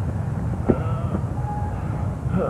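A steady low rumble with one sharp click about two-thirds of a second in and faint thin tones above it.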